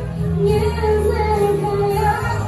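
A woman singing into a microphone over backing music, holding long notes that slide between pitches above a steady bass.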